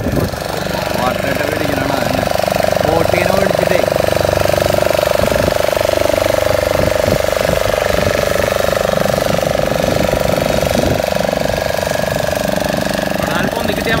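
Outboard motor of a small fibreglass fishing boat running under way as the boat passes close by. It is a loud, steady drone that grows louder over the first two to three seconds and then holds.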